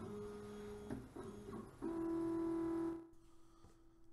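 OpenBuilds LEAD 1010 CNC's stepper motors whining at a steady pitch through several moves as the machine homes: a first move, a couple of brief ones, then a louder, lower-pitched move about two seconds in that falls to a faint tone near the end.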